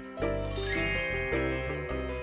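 A bright, tinkling chime sound effect that sweeps upward about half a second in, over background music with steady held notes.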